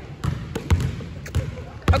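A basketball being dribbled on a hardwood gym floor: about four sharp bounces, roughly one every half second, with fainter bounces in between.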